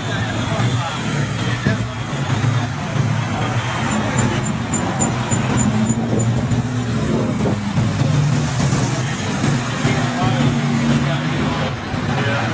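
Cars and trucks driving past on a busy road, their engines running in a steady low hum that rises and falls as each one goes by, with voices in the background.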